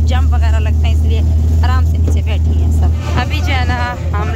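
Motor rickshaw's engine droning low and steady, heard from among the passengers in the back, with voices chattering over it. The drone drops a little about three seconds in.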